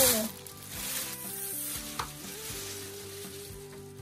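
Soft background music with long held notes, over a light rustling hiss of the plush toy and its wrapping being handled close to the microphone, with one sharp click about two seconds in.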